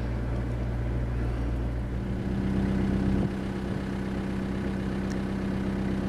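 A vehicle engine running steadily with a low, even hum. Its note shifts about two seconds in, and it becomes slightly quieter a little after three seconds.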